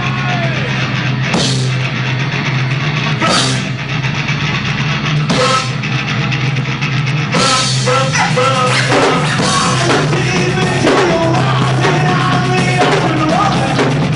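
Live rock band playing loud with a drum kit. Cymbal crashes come about every two seconds at first, then the full band plays on from about seven seconds in.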